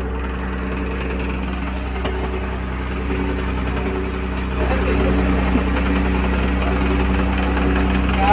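A ferry boat's engine running at idle with a steady hum, getting louder about four and a half seconds in.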